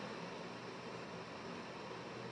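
Faint, steady hiss of room tone with no distinct sound in it.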